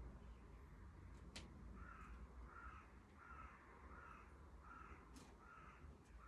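Faint crow cawing, a steady series of about six short caws, roughly one every two-thirds of a second, starting about two seconds in. Two sharp clicks fall between the caws, one at about a second and a half and one near five seconds.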